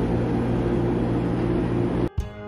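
Steady low hum under a soft even hiss, from a glass-door drinks refrigerator's compressor and fan running.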